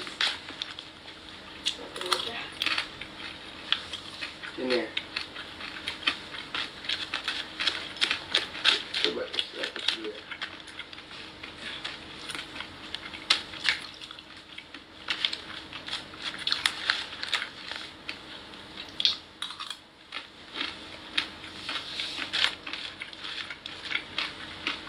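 Rapid, irregular light clicking and clinking of utensils against a dish.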